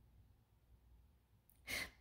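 Near silence, then near the end a woman's short breath drawn in just before she speaks.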